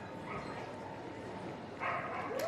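A dog whining in a thin, steady tone, with a louder burst of sound near the end, over the murmur of voices in a large hall.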